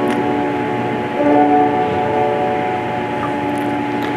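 Grand piano played solo, sustaining chords that ring on, with a new chord struck about a second in.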